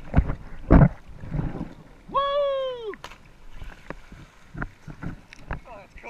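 A person yells once, a high cry lasting under a second, about two seconds in. Two hard thumps come in the first second, with scattered short knocks and water sounds around the yell and a brief falling call near the end.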